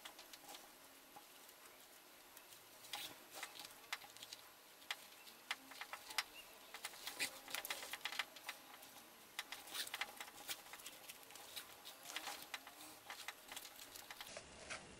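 Chainmail rings on a leather-backed bracer clinking lightly as the piece is handled and a leather lace is threaded through it: faint, scattered metallic clicks, in small clusters now and then.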